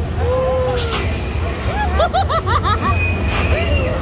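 Roller coaster car running along its track with a steady low rumble, while riders shriek and laugh in short rising-and-falling cries, most densely a little past halfway.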